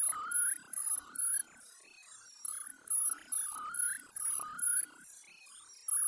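Digitally processed effects-edit audio: a run of short, slightly warbling tone pulses repeating about twice a second, each with a thin high whistle on top.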